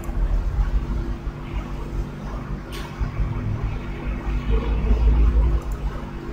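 Steady low hum with a rumbling background that swells and fades, and a single short click a little before the middle.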